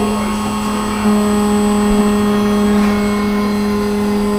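Desktop CNC mill (Othermill) spindle running while cutting, a steady whine holding one pitch, with a second, higher tone joining about a second in.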